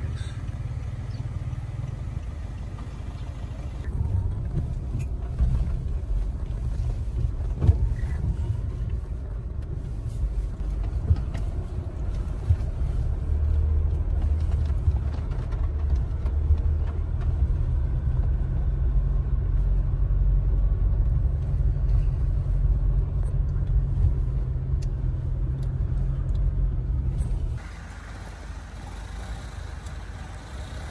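Inside a car driving on a dirt road: a steady low rumble of engine and tyres, with a few knocks from bumps. The rumble stops suddenly near the end, leaving a quieter, thinner outdoor sound.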